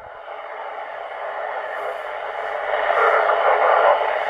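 Band-limited hiss from a Yaesu transceiver's speaker receiving a weak, fading 2 m FM signal with the low-noise amplifier switched on; the noise grows steadily louder.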